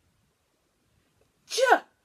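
Near silence for about a second and a half, then a woman's voice saying the phonics sound "j" once, short and clipped.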